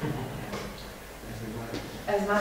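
Faint, indistinct voices in a room, with no clear words.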